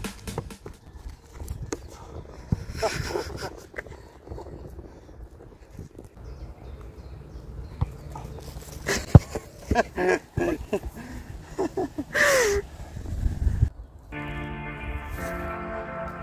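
A football being kicked and kneed in a keepy-uppy, heard as a run of irregular dull knocks, the loudest about nine seconds in, with a few short voice sounds among them. Background music comes in near the end.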